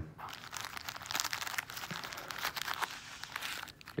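Plastic-wrapped bandage packets from a trauma kit crinkling as they are handled and rummaged out of the kit's pouch: an irregular run of small crackles.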